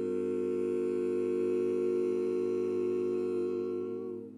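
Barbershop quartet of four unaccompanied male voices holding one sustained chord, steady in pitch, which begins to fade near the end.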